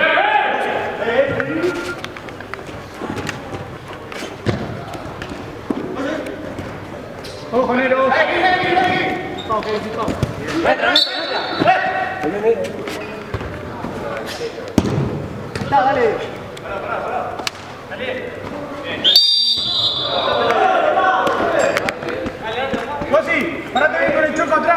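Players shouting during an indoor five-a-side football game, with repeated sharp thuds of the ball being kicked and striking the boards, echoing in a large hall.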